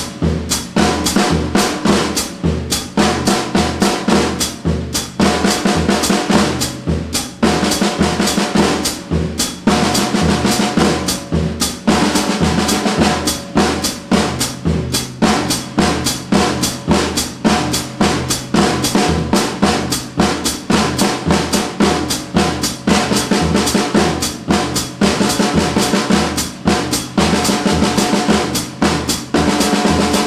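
Drum kit played continuously: a fast, even sticking pattern on the snare and toms over a steady sixteenth-note pulse from the feet, alternating bass drum and hi-hat.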